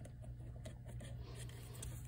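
Faint clicks and scrapes of a test lead's plug being pulled from one jack of a DT832 digital multimeter and pushed into another.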